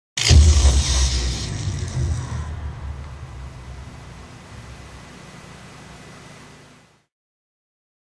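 Intro sting: one loud, deep hit just after the start that rings out and fades away slowly, dying out about seven seconds in.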